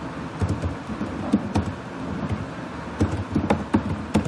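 Computer keyboard keys being typed on, irregular short clicks at about three to four a second, over a steady low background hum.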